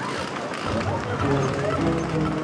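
Background music, with low held notes coming in about a second in, over the noise of a crowd running in the street with indistinct voices.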